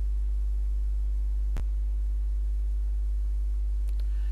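Steady low electrical hum, typical of mains hum picked up by the recording chain, with a single sharp click about a second and a half in.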